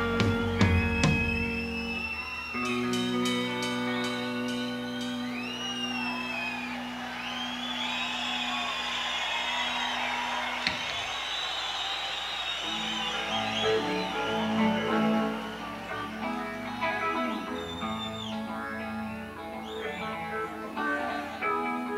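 Electric guitar played live in a quiet, sparse passage: held notes that bend and slide in pitch, over steady low sustained notes. There is one sharp click about ten seconds in.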